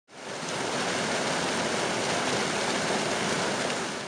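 Grey mine-tailings slurry gushing out of the end of a plastic pipe onto the ground: a steady rush of running water.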